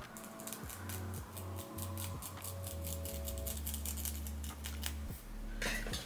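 A small eyebrow razor blade cutting through a wig's lace front, many quick short scraping strokes in a row, stopping shortly before the end.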